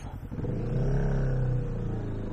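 Kawasaki Vulcan S 650's parallel-twin engine idling with an even pulse. About half a second in, its note rises and grows louder as the bike pulls away, then holds steady.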